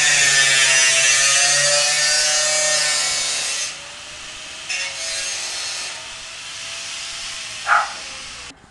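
Angle grinder cutting metal: a loud grinding hiss over a motor whine that sags under load. It eases off a little under four seconds in, then comes back more quietly in short spells, with a brief louder sound near the end.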